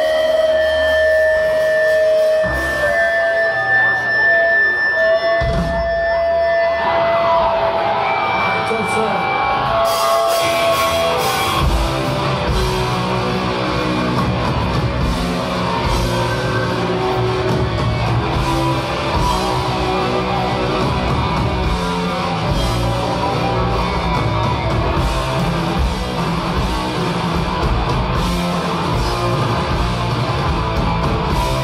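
Live hardcore punk band through a club PA. It opens with a few held, stepping high notes; about seven seconds in a distorted guitar swells up, and around ten seconds in the drums, bass and guitars crash in together and play on at full tilt.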